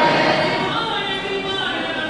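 Many voices chanting a devotional song together in unison, with long held notes.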